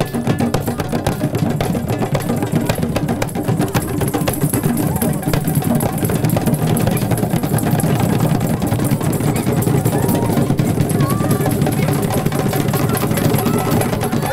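A group of djembe hand drums with a drum beaten with sticks, played together in a dense, continuous rhythm. Voices sound faintly over it.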